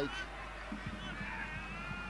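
Stadium crowd ambience, with a faint drawn-out high-pitched tone like a horn from the stands starting about a second in.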